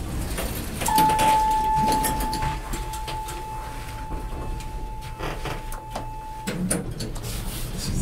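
Elevator cab signal: a single steady ringing tone starts sharply about a second in, holds for about five and a half seconds and cuts off, over light clicks and rattles of the cab and doors.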